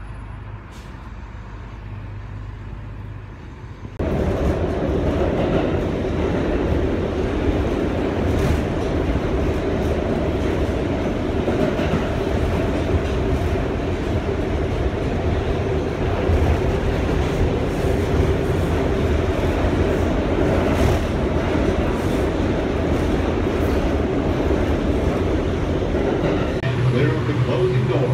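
Subway train running, heard from inside the passenger car: after a few seconds of quieter low hum, loud steady running noise starts suddenly about four seconds in and goes on unbroken.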